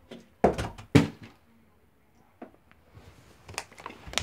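A plastic water bottle lands with two sharp thuds about half a second apart, shortly after the start, then a few faint knocks.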